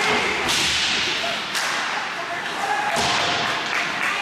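Ice hockey play: sharp knocks and scrapes of sticks, puck and skate blades on the ice, with three strong strikes about half a second, a second and a half, and three seconds in. Voices call out across the rink.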